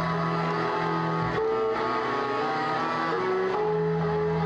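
A string orchestra playing held chords over a low bass line. The bass drops out and the chord changes about one and a half seconds in, and the bass comes back shortly before the end.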